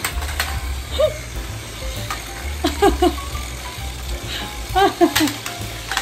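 Battery-operated toy car running, with short high voice sounds over it.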